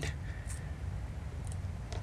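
Quiet room tone with a low steady hum, and two faint clicks about half a second and a second and a half in, from hands handling a small drone video transmitter and its mounting tape.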